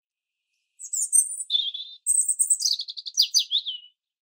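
A songbird singing one phrase, starting about a second in: high chirps, a brief lower note, then a quick run of notes falling in pitch to a final slur.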